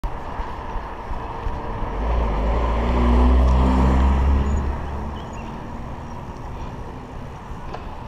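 A car passing close by the moving bicycle, its engine and tyre rumble swelling to a peak about three seconds in and fading away by about five seconds. Steady wind noise on the microphone from riding runs underneath.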